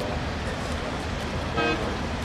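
A single short horn toot, one steady pitched note lasting about a third of a second, about a second and a half in, over a steady low outdoor rumble.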